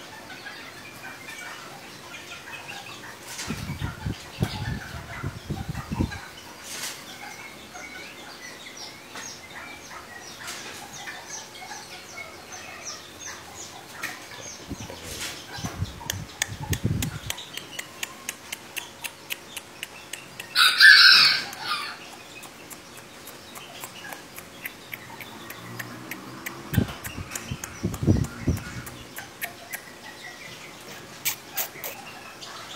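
Young serama chickens chirping and clucking, with one loud call of about a second a little past the middle. Three clusters of low thuds come at intervals, and faint rapid ticking runs through the second half.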